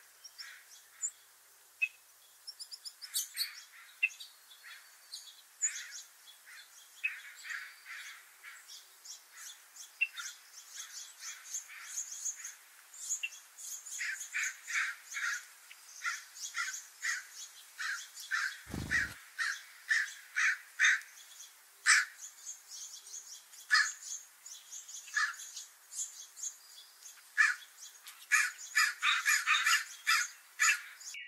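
Small songbirds calling and chirping, many short calls one after another, busier in the second half. A single brief low thump comes a little after the middle.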